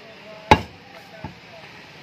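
Butcher's cleaver chopping through beef onto a wooden chopping block: one hard chop about half a second in, then a lighter one a little after a second.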